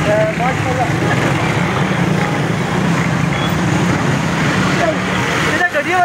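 A motorcycle engine running close by with a steady low hum, breaking off sharply near the end, amid street voices.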